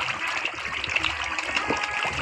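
A crowd of feeding koi and other fish churning the water surface: a steady wash of many small splashes and slaps.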